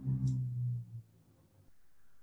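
A man's low, drawn-out filler hum or "uhh" held for about a second, then faint room tone.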